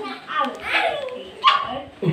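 High-pitched whining vocal sounds, several short calls gliding up and down in pitch, with a sharper louder cry about one and a half seconds in.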